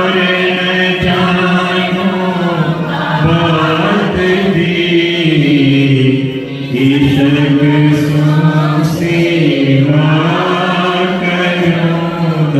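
Devotional chanting of hymn verses to a slow melody, with long held notes that bend gently in pitch and a short break about six and a half seconds in.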